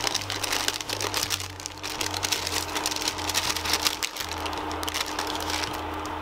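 Baking parchment crinkling and rustling in a dense run of small crackles as roasted garlic is shaken and scraped off it into a pot of boiling soup. A steady low hum runs underneath.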